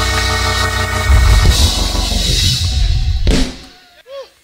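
Church band music: sustained keyboard chords over drums and heavy bass. It breaks off about three seconds in with a last hit and fades away.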